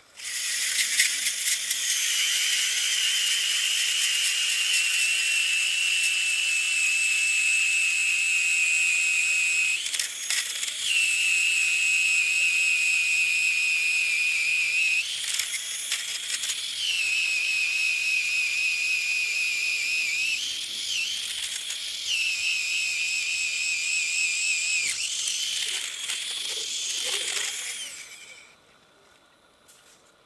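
Makita cordless drill turning an ice auger through ice: a loud, steady high-pitched motor whine that briefly jumps up in pitch three times along the way. Near the end it wavers unsteadily, then cuts off about two seconds before the end.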